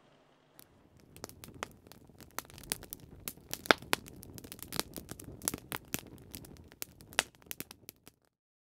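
Wood fire crackling, with many irregular sharp pops and snaps over a low, steady rush. It starts about half a second in.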